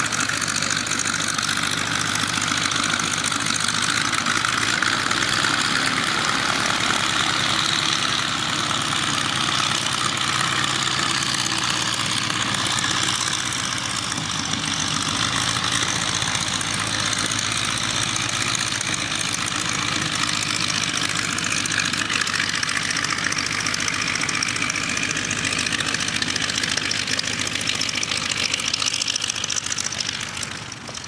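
A biplane's radial engine idling steadily with its propeller turning, run up after minor mechanical adjustments.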